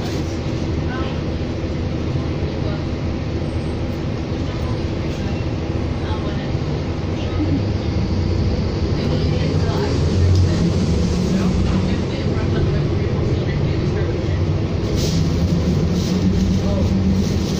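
Inside a 2007 New Flyer D40LFR diesel city bus: the diesel engine and drivetrain running with a steady low hum as the bus moves, growing louder from about halfway through as it pulls harder.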